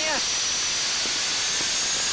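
Steady rushing hiss of cockpit noise in a small aircraft during a tight turn, with a faint high whine slowly rising in pitch.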